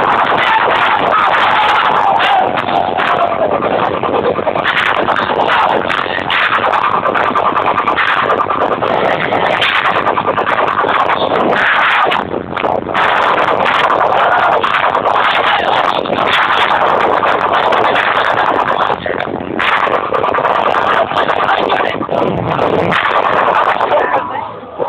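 Loud electronic dance music played over a rave tent's sound system, with a synth line falling in pitch over the first few seconds and brief drops in the mix around the middle and again later.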